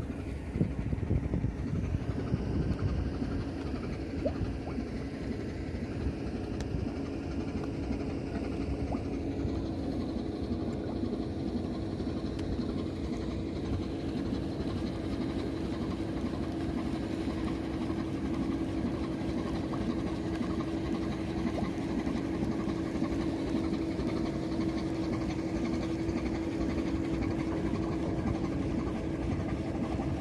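A large engine running steadily: a low rumble with a constant hum that grows a little stronger about twelve seconds in.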